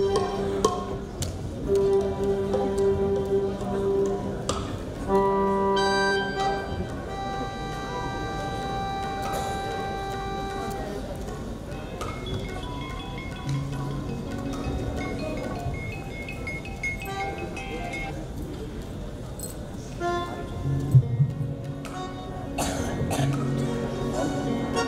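Live stage band playing music: long held notes through the first half, then shorter changing notes.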